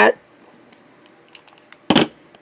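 Faint handling ticks, then a single sharp click near the end as the fountain pen and the lighted loupe are handled.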